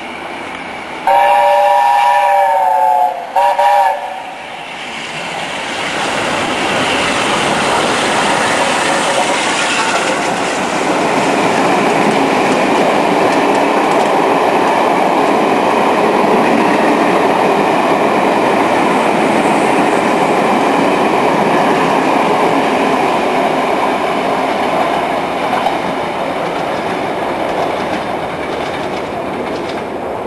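A long whistle blast of several steady tones, then a short second blast. BR Standard Class 8 steam locomotive 71000 "Duke of Gloucester" and its coaches then run through without stopping. The noise builds, holds loud for about fifteen seconds and fades near the end.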